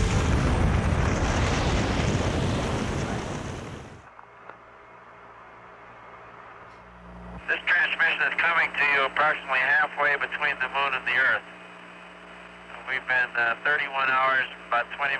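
A loud rushing rocket-engine roar fades away over the first four seconds, leaving a low steady hum. From about seven seconds in come bursts of thin, narrow-sounding radio voice chatter, as over air-to-ground mission communications.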